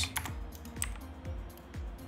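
Computer keyboard keystrokes, a few quick clicks in the first second as values are typed into a 3D program's parameter fields, over quiet background music.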